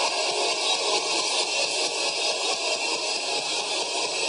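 A congregation praying aloud all at once: a steady, dense roar of many voices with no single voice standing out, and a faint low sustained tone underneath.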